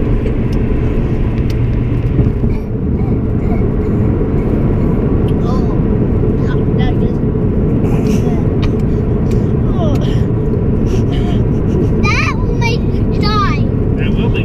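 Steady low road and engine rumble inside a moving car's cabin. Near the end, children's high, wavering squeals and whines as they react to the sourness of the candy.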